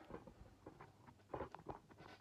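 Faint handling noise: scattered small knocks and rustles as a person moves close to the camera.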